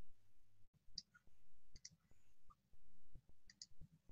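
Faint scattered clicks and small ticks over quiet room tone.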